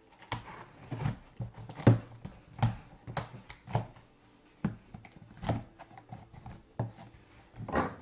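A cardboard shipping box being opened by hand: a series of short, sharp scrapes and knocks of cardboard and tape, the loudest about two seconds in.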